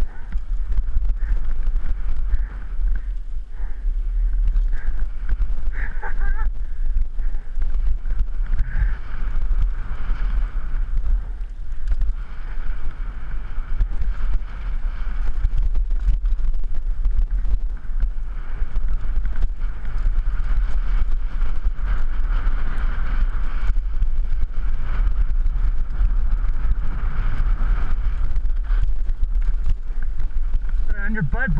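Wind buffeting a helmet-mounted camera's microphone during a fast downhill mountain bike run, with a steady low rumble and the bike rattling and clattering over the dirt trail.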